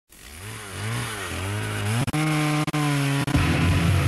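Distorted electric guitar: wavering notes bent up and down, then a held note broken by a few sharp hits, then heavy low chords kicking in near the end.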